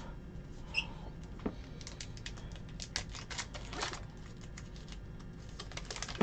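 Faint, irregular light clicks and taps from hands working at a tabletop, a little busier in the middle.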